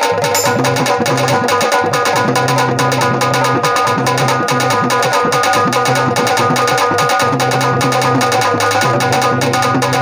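Fast, driving dholak drumming, with shifting low bass strokes under crisp high slaps, played with a plucked keyed banjo and steady sustained tones in Bundeli folk music.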